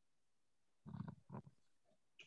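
Near silence: room tone, with two faint short sounds a little after the middle.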